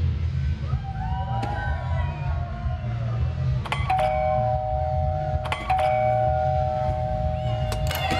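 Muffled party music with a heavy bass beat, with a two-tone electric doorbell chime rung twice in the second half, each ring held for about two seconds.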